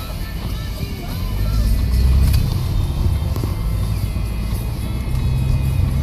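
A car driving on an open road, heard from inside the cabin: a steady low rumble of engine and tyres that grows louder about a second in.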